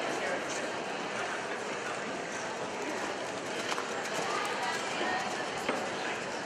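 Indistinct background voices with a horse's cantering hoofbeats on soft arena footing, and a few faint clicks.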